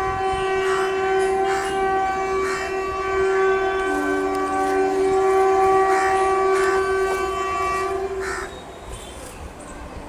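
WAP-4 electric locomotive sounding its horn in one long blast of about eight and a half seconds as it approaches, a second, lower tone joining for about a second midway through.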